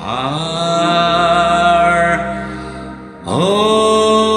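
Music: a man singing a ballad over a karaoke backing track, in two long held notes, the second swelling in about three seconds in.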